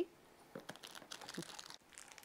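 Faint crinkling and light clicks from pieces of soap being handled and shuffled in a plastic tub.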